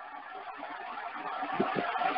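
A pause in a talk, filled by a steady hiss of background noise, with a few faint low sounds near the end.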